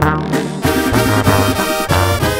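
Instrumental intro of a Mexican banda song: a brass section of trumpets and trombones playing over a steady low bass line.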